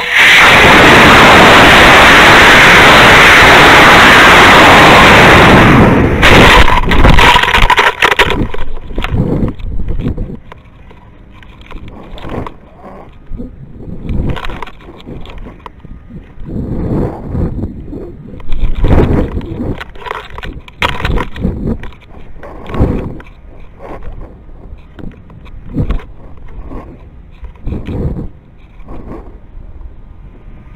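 Estes E12-4 model rocket motor firing at liftoff, with a loud rushing roar from the onboard camera on the rocket that saturates for about six seconds. Around six seconds in, the roar breaks off into a few sharp knocks as the ejection charge fires and deploys the parachute. After that, gusty wind buffets the microphone in uneven swells during the slow descent under the parachute.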